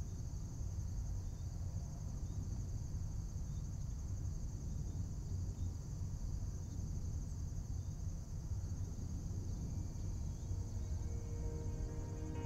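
A steady, high-pitched chorus of insects trilling, over a low rumble; faint musical tones come in near the end.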